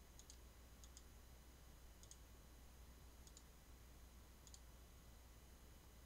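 Near silence with faint clicks of a computer mouse, coming in pairs a little over a second apart, over a low steady hum.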